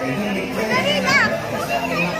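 Excited high-pitched voices shouting and squealing, loudest about a second in, over a few held low notes.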